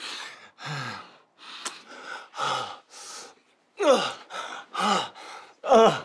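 Men's heavy breathing during intimacy: quick breathy gasps about twice a second, mixed with short moans that fall in pitch. The moans grow louder in the second half.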